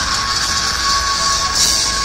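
Metal band playing live and loud: distorted guitars and drums under a long, steady held note, with a cymbal crash about one and a half seconds in.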